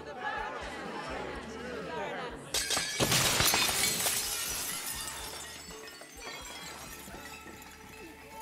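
Chatter of a crowd, then about two and a half seconds in a sudden loud crash of glass shattering onto a floor, the shards tinkling and slowly dying away.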